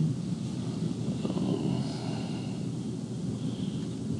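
Steady low rumbling background noise, with no distinct events.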